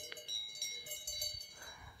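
Cowbells of grazing livestock ringing faintly: several steady, overlapping high bell tones.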